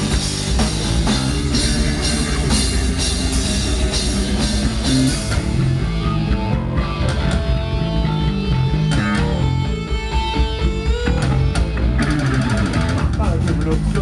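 Live heavy rock band playing through a club PA: electric guitars, drum kit and keyboard. About six seconds in the full band thins out into a sparser passage with long held notes, and the full band comes back in near twelve seconds.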